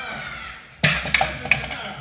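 Three sharp hits in a wrestling ring, the first and loudest about a second in and the others in quick succession, as a wrestler strikes an opponent lying on the ring mat.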